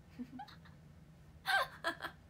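A woman's short breathy laugh: two quick voiced bursts falling in pitch, a little over halfway through, after a brief pause.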